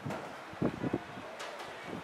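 Wind on the microphone over an open sports field, with a few short low bumps just over half a second in.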